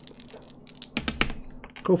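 Strat-O-Matic dice rolled onto a paper scoresheet on a tabletop, clattering in a quick run of sharp clicks about a second in.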